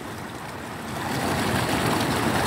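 Muddy floodwater running across a flooded field: a steady rushing noise that grows louder about a second in.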